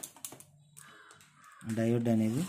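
Light scattered clicks of handling on a workbench, then a man's voice coming in about one and a half seconds in.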